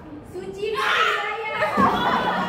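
Loud, excited voices of teenage girls laughing and exclaiming, breaking out a little over half a second in.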